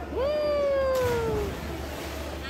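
A person's long yell as a cliff jumper leaps, rising quickly and then sliding down in pitch for over a second, with the splash of the body hitting the cenote water about a second in.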